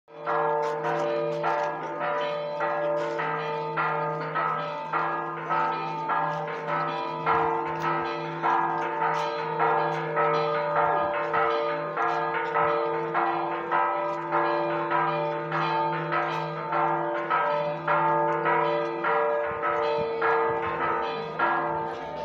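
Church bells pealing: several bells of different pitch struck in a fast, even rhythm of about two strikes a second, their tones ringing on between the strikes.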